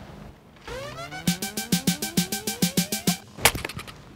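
A produced sound-effect riser: a rising whine with steady ticking, about seven ticks a second, building for about two seconds. Near the end comes one sharp crack as the baseball bat strikes the golf ball.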